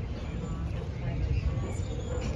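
Street ambience: an uneven low rumble with faint voices in the background.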